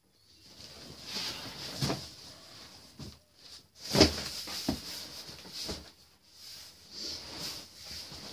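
A heavy cardboard box being handled, lifted and set down on a chair: scraping and rustling of cardboard with several knocks, the loudest about four seconds in.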